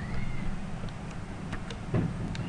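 A few scattered computer keyboard keystrokes over a steady low electrical hum, with a faint high call that rises and falls shortly after the start.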